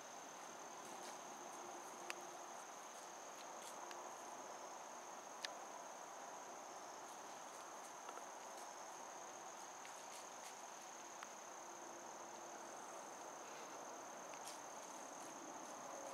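Steady high-pitched insect chorus in woodland, unbroken throughout, with a few faint sharp clicks.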